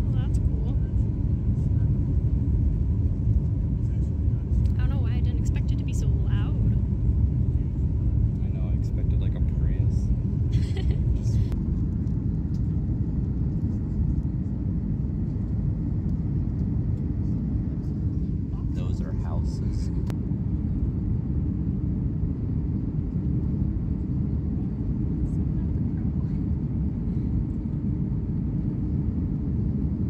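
Inside the cabin of a Boeing 737 airliner climbing just after takeoff: a steady, loud, low rumble of the jet engines and rushing air, easing slightly about halfway through.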